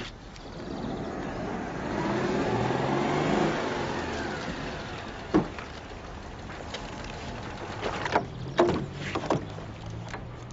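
A car driving past, growing louder to a peak about three seconds in and then fading to a steady engine hum. A few sharp clicks follow in the second half.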